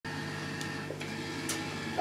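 Steady electrical hum, with two faint clicks about half a second and a second and a half in.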